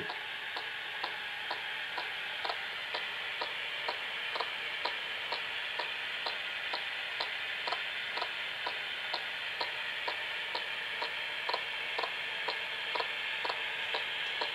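Steady radio static with a short click about twice a second, the sound of a ghost-box style radio sweeping through stations.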